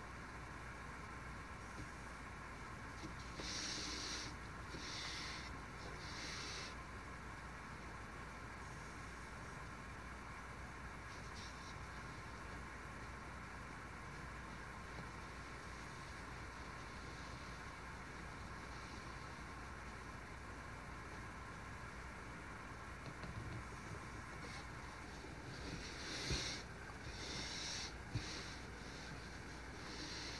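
Chip-carving knife slicing into wood: a few short, quiet scraping cuts about 4 to 7 seconds in and another cluster near the end, with a light knock among them, over a steady low hum.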